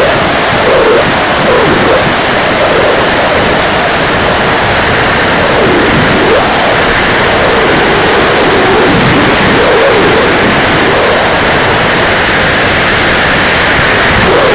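Loud steady rush of a 90mm electric ducted fan and airflow over a Freewing T-45 Goshawk model jet in flight, picked up by a camera on its fuselage. A lower tone in the noise sags and rises several times.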